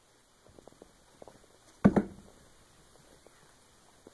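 A calico cat jumping down from a kitchen counter: a few light taps as it steps, then a loud double thump about two seconds in as it lands on a wooden floor.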